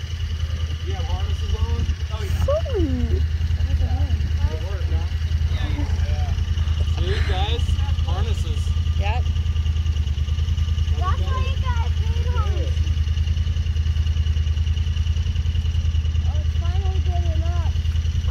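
Side-by-side UTV engine idling steadily, with indistinct voices talking over it.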